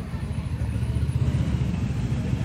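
Motorcycle engine running at low speed as the bike rides slowly away, a steady low pulsing rumble.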